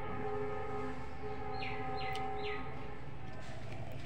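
A long, steady horn sounding several pitches at once, fading out about three and a half seconds in. Three short, high, falling chirps come in the middle.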